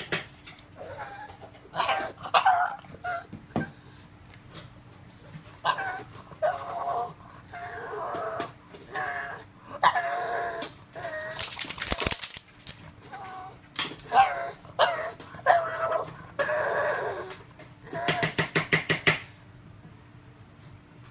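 Pug whining in a string of short, pitch-bending calls, begging for food. Sharp clicking rattles come about halfway through, and a quick burst of clicks near the end.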